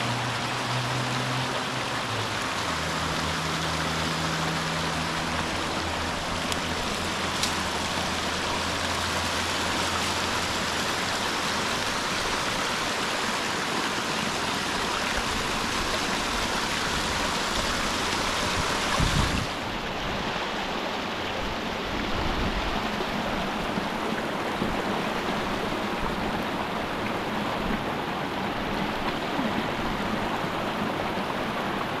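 Small icy mountain stream babbling over rocks and little cascades: a steady rush of water. About two-thirds of the way through there is a brief thump, and after it the water sounds duller, with less hiss.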